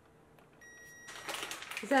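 Programmable drip coffee maker beeping once as its brew button is pressed: a single high electronic tone about half a second long.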